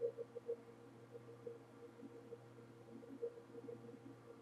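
Faint steady electrical hum of the recording setup, with a few soft taps scattered through it, the loudest at the very start.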